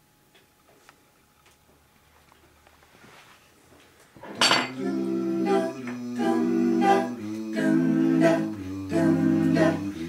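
Faint room noise, then about four seconds in a song's instrumental intro starts with a sharp first stroke. Sustained chords follow, struck in a regular rhythm, with the bass note changing every second or so.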